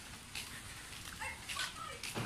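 Faint short animal calls, a few squeaky chirps and whines clustered in the second half, over a steady background hiss.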